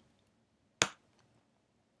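A single sharp click a little before a second in, a computer click advancing the presentation slide; otherwise faint room tone.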